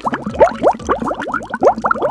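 Water poured from a plastic bottle into a small plastic toy bathtub, gurgling with a quick run of short rising bubbly notes.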